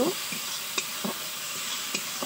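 Masala frying in oil in a metal kadai, a steady sizzle, while a spatula stirs and scrapes against the pan in a few irregular strokes.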